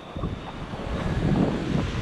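Wind buffeting the microphone with a low rumble, over the wash of small surf waves breaking and foaming.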